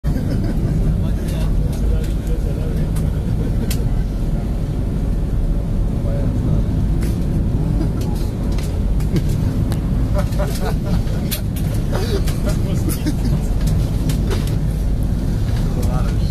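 Pilot boat running at speed: a steady low engine rumble under rushing wake water, with short crackles from spray or wind. A person laughs about ten seconds in.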